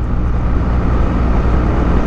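BMW R1200GS Adventure motorcycle cruising at a steady 50 mph: a low, even flat-twin engine drone under wind and road noise.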